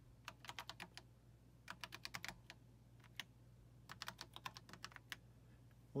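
Faint typing on a computer keyboard: three quick runs of key clicks with short pauses between them as a terminal command is entered.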